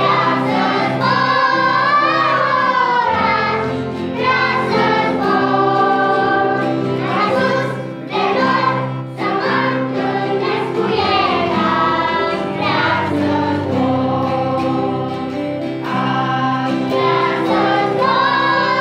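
Children's choir singing a Romanian worship song in unison, with guitar and piano accompaniment holding steady chords beneath the voices.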